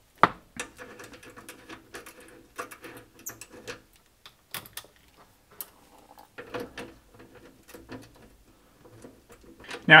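Light metal clicks and scrapes of hand-work on an inverter's battery terminal: the nut and washer come off the red terminal post and the red cable's ring lug is fitted onto it. A sharp click just after the start is the loudest; smaller clicks and rattles follow irregularly.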